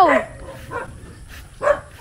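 A dog barking once, a short bark near the end.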